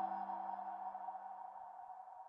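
The held musical tone of a logo sting, several steady pitches sounding together and slowly fading out.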